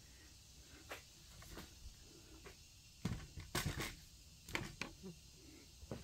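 A few scattered light knocks and clicks over quiet room tone, the loudest about three to four seconds in.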